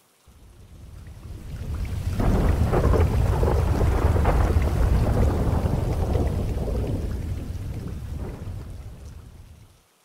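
Thunderstorm sound: deep rolling thunder with rain, swelling in over about two seconds and fading out near the end.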